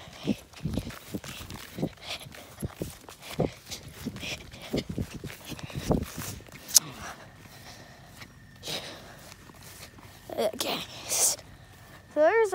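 Footsteps of a person walking over the ground outdoors, a step about every half second, mixed with rubbing and knocking from a hand-held phone swinging as he walks. A short pitched sound comes about ten and a half seconds in.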